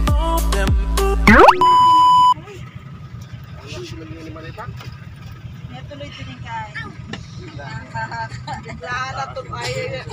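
Intro jingle music ending in a rising whoosh and a loud, steady beep about a second long. Then the cabin of a moving passenger jeepney: the engine's low, steady rumble under passengers' chatter.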